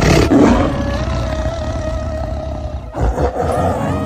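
Tiger roars: a loud roar at the start and a second one about three seconds in.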